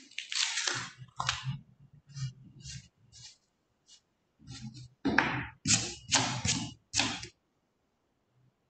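Writing on paper close to the microphone: short scratching strokes in two clusters, with a pause about four seconds in and a louder run of strokes in the second half.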